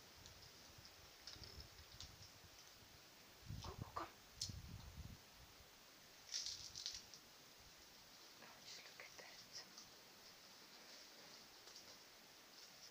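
Near silence with faint outdoor ambience: scattered faint high chirps, plus a brief low rumble about four seconds in.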